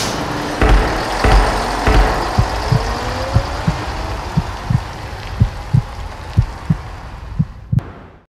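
Heartbeat sound effect: low thumps, mostly in pairs about once a second, over a sustained music drone with a slowly rising tone. It fades out near the end.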